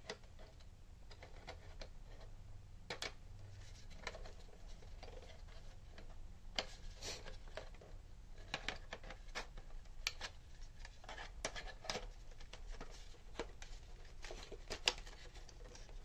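Plastic parts of a toy foam-dart blaster being handled and fitted together: irregular small clicks, taps and light knocks of hard plastic on plastic.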